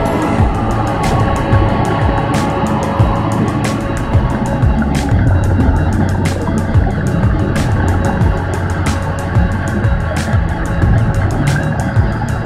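Underwater wet-welding arc crackling with many irregular sharp clicks, over background music with a steady low drone.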